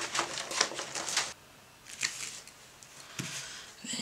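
Clear plastic stamp sheet being handled: a quick run of light plastic clicks and crackles, then a quieter stretch with a couple of faint taps.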